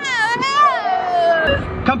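A long, high-pitched wavering cry that slides down in pitch after about half a second. A low rumble sets in near the end.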